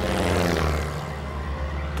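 Light single-engine propeller plane passing low, loudest about half a second in and then fading away.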